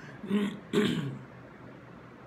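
A man clearing his throat: two short rasps in the first second, the second one louder and falling in pitch.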